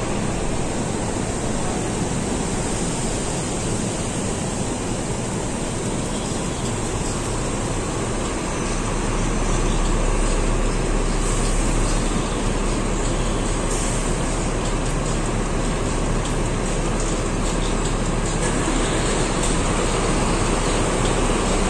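Bus engine idling amid the steady noise of a covered bus terminus. A low engine hum grows stronger about nine seconds in, heard from inside the bus by its front doors.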